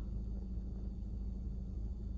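Steady low rumble inside a parked car's cabin, with no other sound on top of it.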